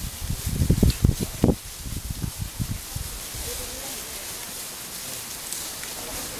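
Footsteps rustling and crunching through ferns and dry leaf litter as walkers go downhill, with irregular low thumps in the first second and a half that settle into a steadier rustle.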